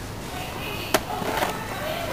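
Supermarket background noise with faint voices, and a single sharp click about halfway through.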